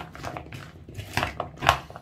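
A metal spoon stirring sliced radishes and cucumber dressed with sour cream in a bowl: irregular short clicks and rustles of the vegetables and spoon, the loudest a little before the end.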